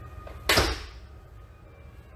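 A single sudden, sharp impact sound about half a second in, fading away within about half a second, over faint background music.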